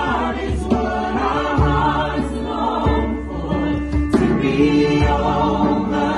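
Recorded gospel choir music: voices holding sung notes over a bass line that moves every second or so.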